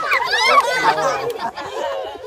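Several children's voices chattering and calling out over one another.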